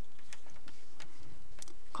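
Wooden knitting needles clicking lightly against each other as stitches are worked, a few irregular ticks.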